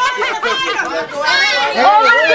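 Speech: a woman talking loudly through a handheld megaphone, with other voices chattering.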